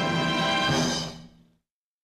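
Orchestral opening title fanfare over the studio logo, holding its closing chord, which fades away about a second and a half in; then dead silence.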